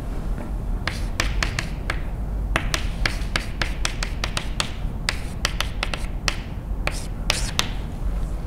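Chalk writing on a blackboard: quick irregular runs of sharp taps and short scratches as each symbol is written, with brief pauses between strokes.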